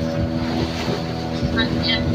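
Small open boat's engine running steadily at a constant pitch, with voices in the background.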